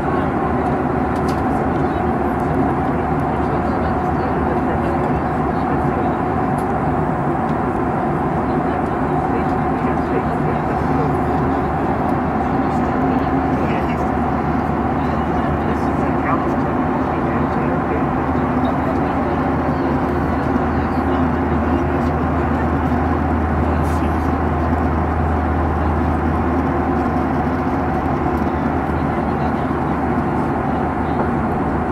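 Steady cabin noise of a jet airliner in cruise, heard from inside by the window: a constant low engine drone under the rush of air past the fuselage.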